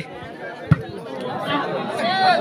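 Crowd of spectators chattering, with one sharp smack of a volleyball being hit about two-thirds of a second in. The crowd's voices swell toward the end as the rally goes on.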